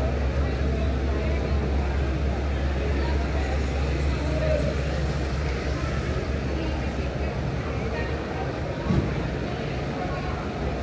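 Indistinct street chatter from people talking nearby over the low steady hum of idling taxis; the hum fades about two-thirds of the way through, and a single thump sounds near the end.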